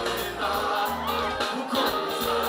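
Live gospel worship music: a band with drums, keyboards, bass and guitar, and many voices singing together.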